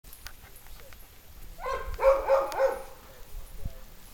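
A dog gives a quick run of about four short, high-pitched vocal sounds, about one and a half to three seconds in.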